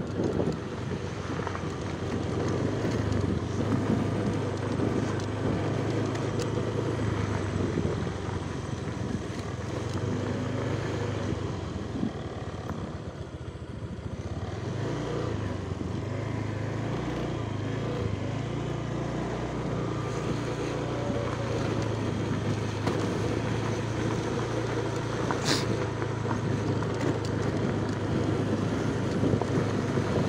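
Motorcycle engine running steadily while riding, over a rush of wind and road noise. The engine eases off about halfway through, then its pitch wavers as it picks up again.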